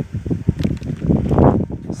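Wind buffeting the microphone: an uneven low rumble with a few knocks, swelling to its loudest a little past the middle.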